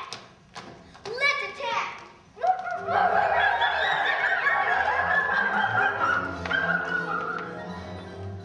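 Children's voices on a stage: a voice calls out twice with sliding pitch, then about two and a half seconds in many children's voices rise together loudly and carry on for several seconds, fading near the end.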